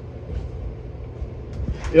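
Low, steady rumbling noise with a faint hum under it.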